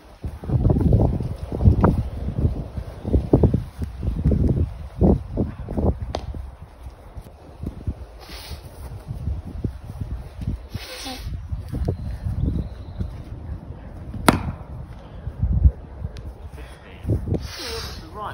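A cricket bat strikes a ball once, a single sharp knock about fourteen seconds in. Before it, in the first few seconds, low gusts of wind rumble on the microphone.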